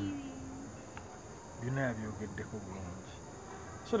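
Insect chorus of the cricket kind: a steady, high-pitched trill that carries on unbroken.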